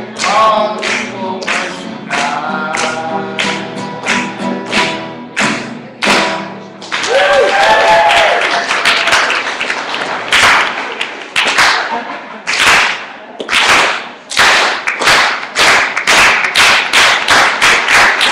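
A man singing over a strummed acoustic guitar, the final chord ringing out about six seconds in. A voice then calls out, and loud hand claps follow over a background of applause, settling into an even beat of about two claps a second near the end.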